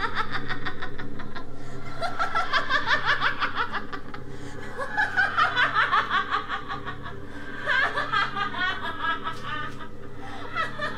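Evil disembodied laughter in several bouts of quick, repeated voiced pulses, over a steady low hum.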